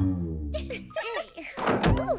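Cartoon sound effect of a wardrobe door thunking open near the end, over light background music with gliding notes.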